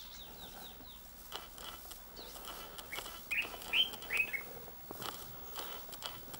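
Wild birds calling: a run of quick, high, falling chirps near the start, then a louder group of four short calls a little past the middle, with faint scattered clicks in between.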